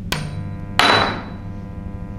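Aluminium ring flung off a transformer core by a Thomson's jumping ring and clattering down: a sharp metallic strike just after the start, then a louder one under a second in, both ringing on with a bell-like tone that dies away.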